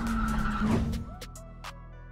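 Car engine held at steady high revs with tyres squealing in a skid, cutting off about a second in. Quieter background music follows.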